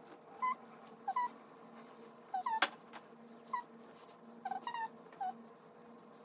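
Short, high whining squeaks, about a dozen, repeated irregularly like an animal whimpering, with one sharp click a little before the middle, over a low steady hum.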